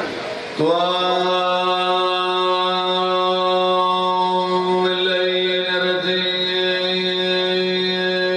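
A zakir's amplified voice holding one long, steady chanted note. It starts about half a second in with a slight upward glide and is sustained on one pitch throughout.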